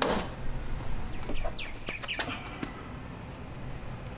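Plastic louvered vent cover on a Ford Bronco tailgate being pressed into place with a few sharp clicks, one at the start and another about two seconds in. Short bird chirps are heard faintly in between.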